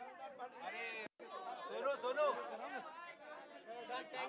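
Chatter of many people talking at once, voices overlapping, with the sound cutting out completely for an instant about a second in.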